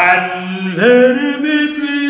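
A man's solo singing voice holding a long, drawn-out vowel, sliding up in pitch just under a second in and holding the higher note.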